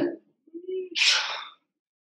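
A man makes a short low hum, then a loud breathy exhale: hard breathing from exertion at the end of an exercise set.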